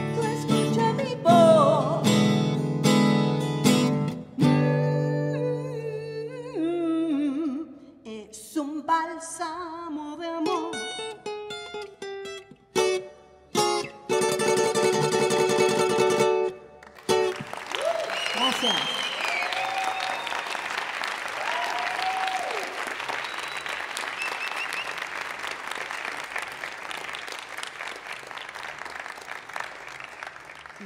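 A woman singing to her own acoustic guitar. The song closes with a few final strummed chords and stops about 17 seconds in, and the audience then applauds and cheers.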